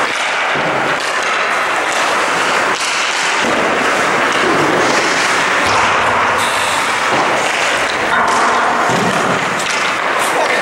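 Echoing ice-rink noise during hockey practice: a steady, loud wash of sound with scattered sharp knocks from hockey sticks and pucks, and indistinct voices.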